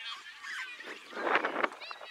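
A loud, harsh shout about a second in, lasting about half a second, with children's high-pitched calls from the field around it.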